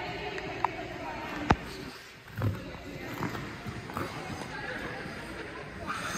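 Indoor ice rink ambience: a steady background hum with faint indistinct voices, broken by a few sharp clicks and knocks, the loudest about a second and a half in.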